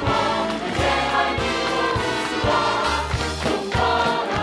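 Broadway-style show tune: an ensemble chorus singing over orchestral accompaniment, with a steady beat.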